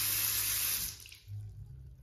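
Water from a bathroom sink faucet running steadily into a porcelain basin, then shut off about a second in. A low hum carries on underneath.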